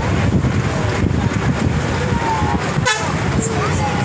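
Wind buffeting the microphone over the rumble of a moving vehicle, with a short horn toot about three seconds in.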